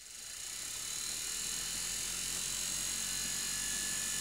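Salvaged washing-machine universal motor running unloaded on an 18 V cordless drill battery. It spins up from a standstill over about a second, then runs at a steady speed with a high, even whirring hiss.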